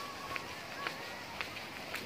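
Footsteps on a concrete path at an even walking pace, about two steps a second, over faint background voices.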